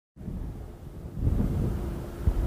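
Outdoor roadside sound that cuts in abruptly: a low wind rumble on the microphone, growing heavier about a second in, with a car driving past.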